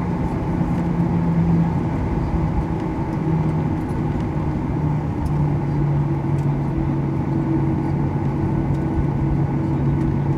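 Inside the cabin of a Boeing 737-800: the CFM56-7B engines running at taxi power as the plane rolls along, a steady hum with a low drone that settles a little lower about halfway through.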